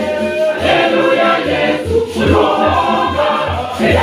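A mixed choir singing in parts over a pair of hand-played conga drums that keep a steady beat of about two to three strokes a second.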